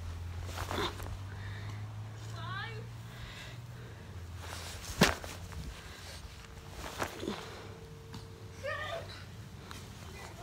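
A football smacking into a hand once, sharply, about halfway through, with a couple of softer knocks and brief distant voices.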